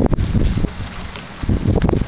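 Gusty wind buffeting the microphone: a low, uneven rumble that eases off about a second in and picks up again near the end.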